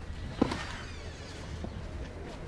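A single sharp tennis ball strike about half a second in, over a faint steady outdoor background.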